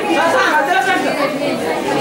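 Several people talking at once, overlapping chatter of voices in a room.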